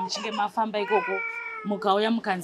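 A woman talking, interrupted a little under a second in by one long, high, level cry of about half a second, like a meow.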